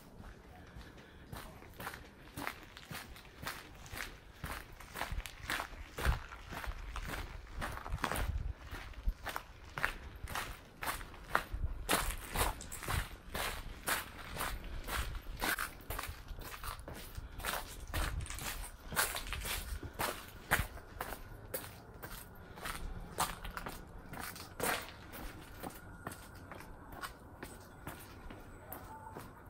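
Footsteps of a person walking on gravel and rough stone paths, a steady stride of about two steps a second.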